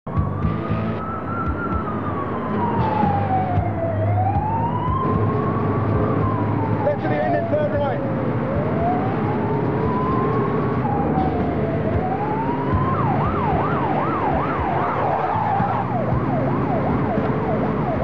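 Fire engine siren in a slow wail, rising and falling about every four seconds, switching to a fast yelp about thirteen seconds in, over the engine running.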